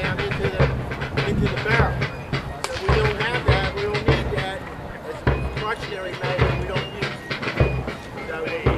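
People talking, several voices whose words are not clear, with a low rumble that comes and goes beneath them.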